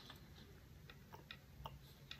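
Faint, irregular wet mouth clicks from closed-mouth chewing of stir-fried noodles, close to the microphone.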